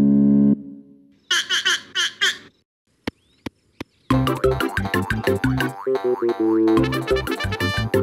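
Cartoon soundtrack. It opens with a short, loud low tone that fades away, then a quick run of high chirps from the little cartoon bird and a few sharp clicks. About halfway through, bouncy children's-cartoon music with a steady beat starts and runs on.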